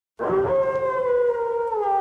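A wolf howling: one long call that begins just after the start and sinks slightly in pitch near the end.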